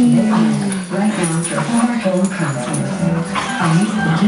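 Small dogs yipping and whimpering as they play, a few short high calls about a second in and again near the end, over steady background music.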